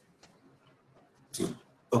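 Near silence in a video-call conversation, then a short breathy noise from a speaker's microphone about one and a half seconds in.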